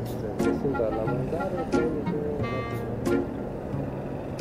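Quiet men's voices in conversation over steady background vehicle noise, with a short pitched tone about two and a half seconds in.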